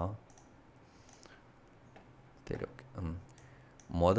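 A few keystrokes on a computer keyboard, irregularly spaced, as code is typed, with a brief murmured word about two and a half seconds in.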